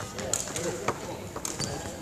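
A few sharp knocks with hall echo: badminton racket strings hitting a shuttlecock during a practice rally, with faint voices in the background.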